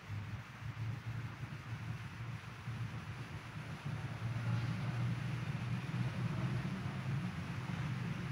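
Steady low rumble of background room noise, with no singing or speech, growing slightly louder about halfway through.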